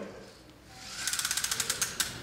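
A rapid, even train of small mechanical clicks, about fifteen a second, starting about a second in and lasting about a second.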